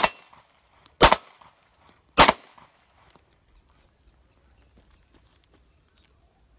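Three semi-automatic pistol shots, about a second apart, each with a short echo off the range, followed by a few faint clicks.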